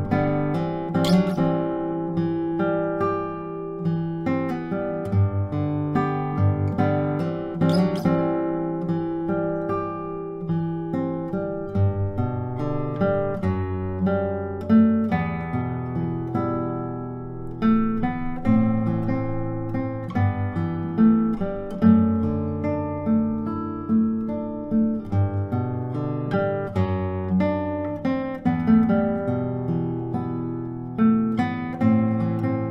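Solo nylon-string classical guitar played fingerstyle at full tempo: a plucked melody over ringing bass notes and arpeggiated chords.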